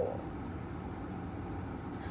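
Steady low vehicle rumble heard inside a car's cabin, even and unbroken, with the tail of a spoken word at the very start.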